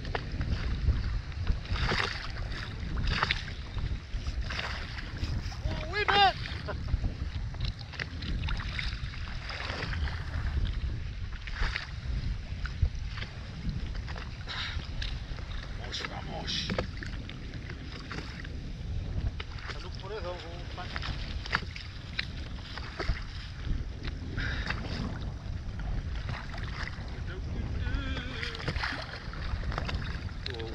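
Wind rumbling steadily on the microphone of a small inflatable boat on a choppy sea, with water slapping and splashing against the hull. A few short vocal sounds break in now and then.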